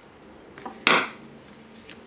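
A single sharp knock of a hard object set down on a plastic cutting board about a second in, with a faint tap just before it; the rest is quiet handling of the fondant.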